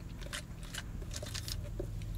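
Faint mouth sounds of a man sipping root beer through a straw, with a few soft clicks, over a steady low hum.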